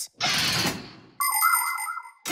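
Cartoon transition sound effect: a whoosh that fades away over about a second, then a bright, ringing chime jingle.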